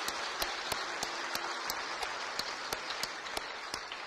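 Congregation applauding, a dense steady patter of many hands clapping that starts to taper off near the end.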